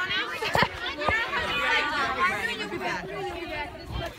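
Chatter of several young people's voices talking over one another, none of it clear.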